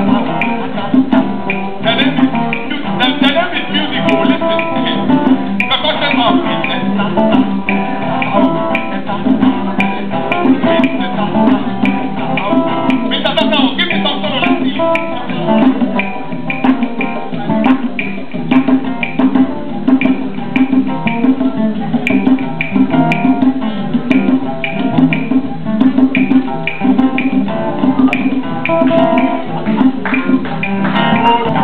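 Live acoustic band playing a steady rhythmic piece: plucked acoustic guitars over hand drums.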